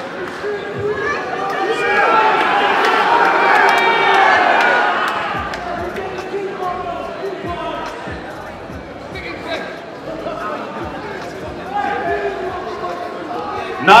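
Crowd of spectators talking and calling out over one another in a large hall, loudest a few seconds in, with occasional sharp knocks.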